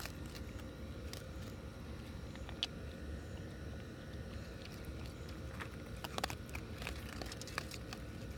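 A raccoon crunching dry kibble from a bowl: irregular soft crunches and clicks, with a few quick clusters.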